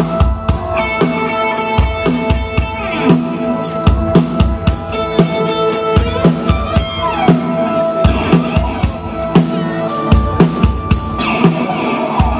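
Live rock band playing an instrumental passage: a drum kit keeps a steady beat under sustained electric guitar and keyboard tones, with no vocals.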